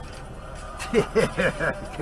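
A man laughing briefly, a run of short chuckles about a second in, over a low steady hum.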